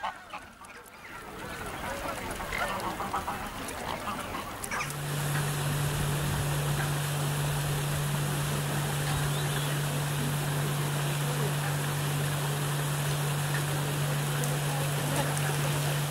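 Waterfowl on a pond calling, a mix of goose honks and duck quacks, for the first few seconds. About five seconds in the sound changes abruptly to a steady low hum over an even hiss, which holds unchanged to the end.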